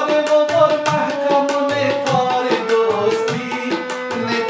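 A man sings a song to harmonium and tabla. Rapid tabla strokes run throughout, and the bass drum's low notes slide up in pitch. The voice holds and bends long notes over the harmonium's chords.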